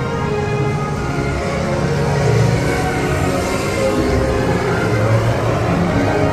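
Dark-ride soundtrack music playing steadily over a low rumble from the moving ride car.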